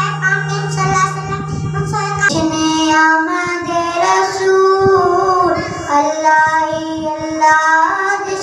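A boy singing a naat, a devotional poem in praise of the Prophet, into a handheld microphone, in long held notes with ornamented turns. A steady low hum sits under the singing for the first two seconds or so.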